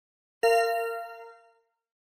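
A single bell-like chime, struck once a little way in and ringing out, fading over about a second: the cue that closes a dialogue segment and signals the interpreter to begin.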